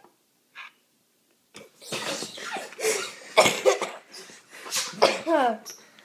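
Two boys' breathy, stifled laughter in repeated bursts, starting about a second and a half in after a short silence, with a few falling voiced laughs near the end.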